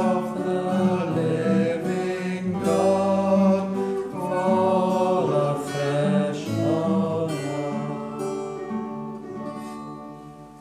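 Hymn music with singing and a plucked-string, guitar-like accompaniment, fading out over the last few seconds.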